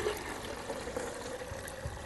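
Water pouring from a plastic jug into a clear plastic container as it fills toward the one-litre mark, a steady pour whose pitch creeps up slightly as the container fills.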